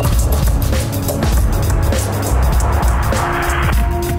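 Electronic music with deep synth bass and held synth tones. A rushing noise swell builds through the middle and cuts off suddenly near the end.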